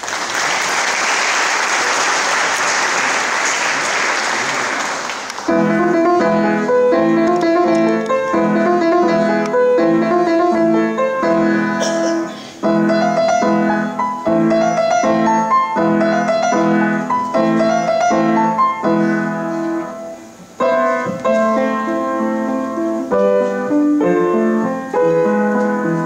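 Applause for about the first five seconds, then a grand piano starts a lively piece: short, repeated chords in a stop-start rhythm, played by a child at a recital.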